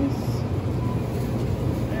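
Steady low rumble and hiss of supermarket background noise beside the refrigerated produce racks, with no clear single event.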